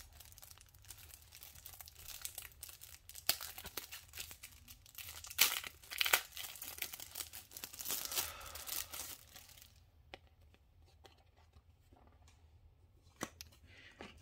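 A trading-card booster pack being torn open and its wrapper crinkled: a run of crackling with sharp snaps that dies down about ten seconds in, then a couple of faint clicks near the end.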